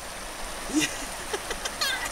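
Steady rush of a flowing stream, an even hiss of running water close by.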